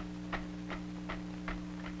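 Marching band percussion clicking a steady beat, about two and a half clicks a second, over a steady low hum.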